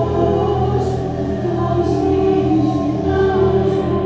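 Choir-like singing: several voices hold long, steady notes in harmony over a steady low drone.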